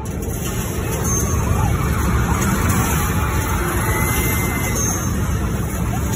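Concert crowd screaming and cheering, swelling in the first second and staying loud, with many high-pitched screams.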